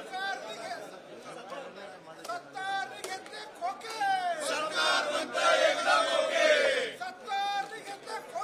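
A group of men chanting protest slogans together, shouted lines demanding a minister's resignation; the chanting grows louder and fuller from about halfway through.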